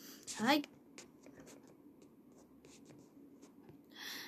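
A short spoken 'hai', then faint, scattered light scratching and tapping close to the microphone.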